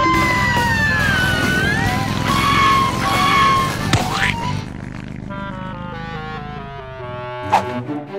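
Cartoon soundtrack: music over a motorbike engine running with a gliding wail for the first few seconds, a rising whoosh about four seconds in, then a falling run of notes and a sharp hit near the end.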